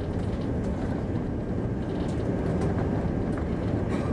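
Steady low rumble of an airliner's cabin in flight: engine and airflow noise heard from a window seat.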